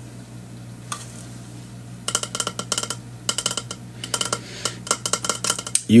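Clinking and rattling from a metal water bottle handled in the hands: a quick, irregular run of small clinks with a short ring to each, starting about two seconds in. A steady low hum lies under it.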